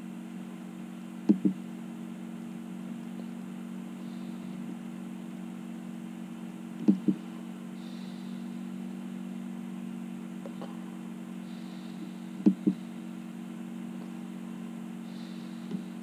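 Electric fan motor running with a steady low hum, though its switch is off. A short double knock sounds about every five and a half seconds.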